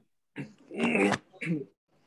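A person's voice: two short vocal sounds without clear words, the longer one in the first half and a brief one after it.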